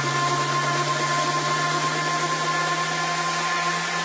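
Electronic dance music in a beatless breakdown: a steady wash of noise over held synth tones and a low drone, with no drums.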